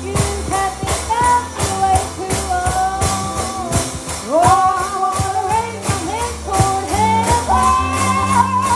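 Music: a song with a lead singer's wavering melody over a band, with steady bass notes and a regular beat.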